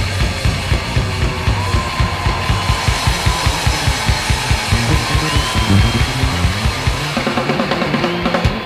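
Punk rock band playing live: drum kit keeping a fast, even beat under bass and electric guitar, with a few held notes sliding in pitch above it.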